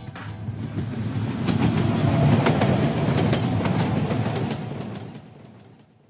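A rattling, rumbling mechanical sound effect with fine clicking in it, swelling to a peak two to three seconds in and then fading away.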